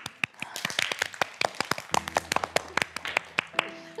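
A small group applauding in a classroom: scattered, irregular hand claps from several people that thin out near the end.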